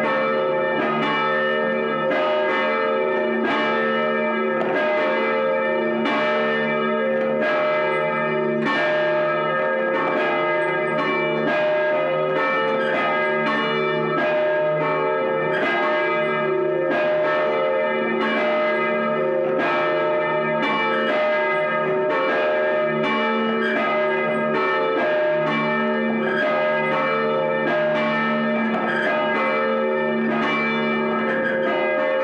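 Church bells ringing: several bells struck one after another in a steady, quick rhythm, each tone ringing on and overlapping the next.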